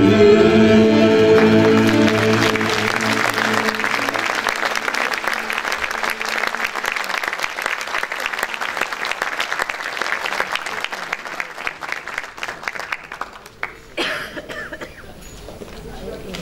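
The last held chord of a Turkish art music choir with soloist and ensemble dies away, and audience applause follows, gradually thinning out. Near the end there is a brief louder knock or noise.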